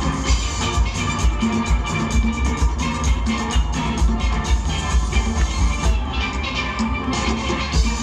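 A steel orchestra playing live: many steel pans ringing in rapid strummed and rolled notes over a steady low drum beat.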